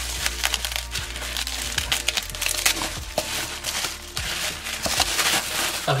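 Plastic bubble-wrap packaging being handled and pulled open by hand, giving a dense, irregular run of crinkles and crackles.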